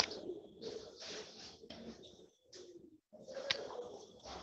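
Faint, choppy background noise coming through an attendee's unmuted microphone on an online video call, cutting in and out in short stretches. It is the stray mic sound that is interrupting the class.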